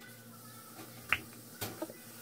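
A spoon clicking once against a cereal bowl about a second in, over faint room noise.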